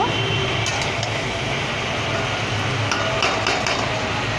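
Metal spatula stirring chunks of potato, pointed gourd and onion in a kadhai, with a few clinks and scrapes against the pan about a second in and again near the three-second mark, over a steady background hum.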